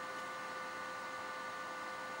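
Steady hum and hiss of running electrical equipment, with a few faint, steady whining tones over it.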